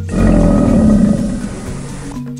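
A crocodile roar sound effect: one loud, rough growl about two seconds long that swells quickly and fades near the end.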